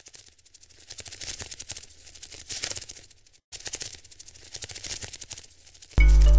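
Intro sound effect of rapid, dense crackling clicks, like typewriter clatter or static, swelling and fading in waves, with a brief cut-out about three and a half seconds in.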